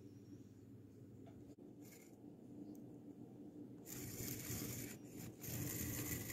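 Faint low hum with soft rustling and scraping that grows louder from about four seconds in.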